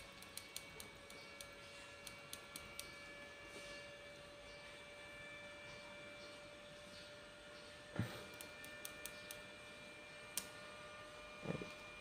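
Electrofishing inverter unit humming faintly with a steady high whine. A few light clicks of its wires being handled come in the first three seconds, with a knock about eight seconds in and a sharp click shortly after.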